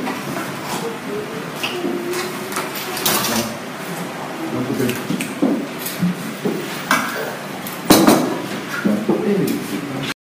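Plates and spoons clinking and clattering as food is served at a table, with a sharp clatter about eight seconds in, over people talking in the room.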